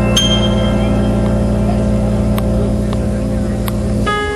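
Live band holding one long sustained chord, a steady low drone, with a brief high note near the start and a couple of faint ticks.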